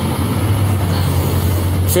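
Road traffic: a steady low engine rumble with general street noise.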